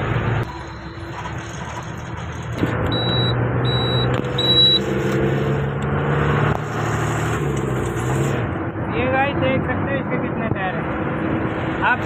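Road traffic heard from a moving two-wheeler: a steady engine hum under rushing wind and tyre noise, the hum rising a little a few seconds in. Three short high beeps sound about three to five seconds in.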